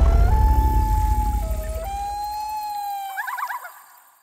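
A long wailing call held on a few steady pitches, jumping between them, and ending in a quick warble, over a deep rumble that fades out over about three seconds.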